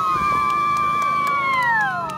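A long high-pitched scream, held for over a second and then falling in pitch near the end, with other voices yelling around it.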